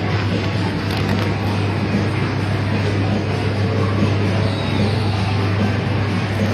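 Coin-operated kiddie rides running, their music playing over a steady low hum.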